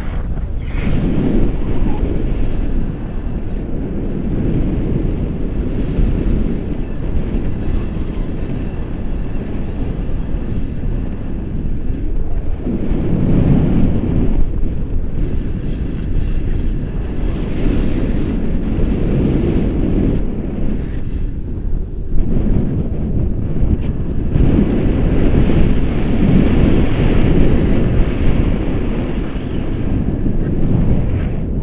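Wind rushing over an action camera's microphone in flight under a tandem paraglider: a loud, low rumble that swells and eases every few seconds.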